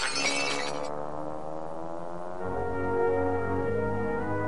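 Cartoon soundtrack: a crash sound effect in the first second over music, which then slides down in pitch and settles into held chords.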